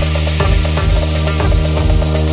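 Melodic techno playing in a DJ mix: a steady kick drum under a sustained synth bass line, with hi-hats.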